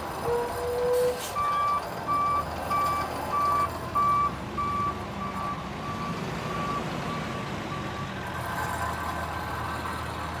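Truck backup alarm beeping at an even pace, about one and a half beeps a second for some six seconds and growing fainter toward the end, over the steady running of the truck's diesel engine. A short steady tone sounds just before the beeps begin.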